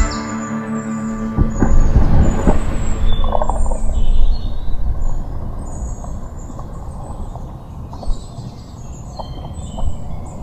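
Water splashing in a river, loudest from about one and a half to four and a half seconds in, then easing to a steady rushing hiss with birds chirping now and then. The last of a music track fades out right at the start.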